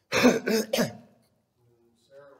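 A man coughing three times in quick succession into his hand, loud and sharp, all within the first second.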